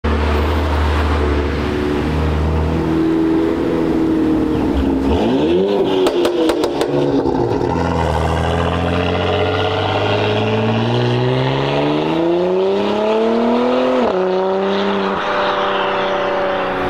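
Audi Sportback's engine and exhaust as the car pulls away: a steady low drone, then a short rev with a quick burst of sharp crackles. After that comes a long rising pull that drops suddenly at a gear change near the end and settles into a steady drone.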